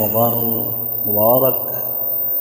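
Only speech: a man talking, in two short phrases.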